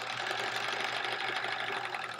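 Domestic sewing machine stitching at a steady speed, a fast, even run of needle strokes as a fabric square is fed through.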